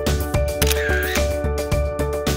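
Background music with a quick, steady beat over held synth chords, and a brief swooping sound about a second in.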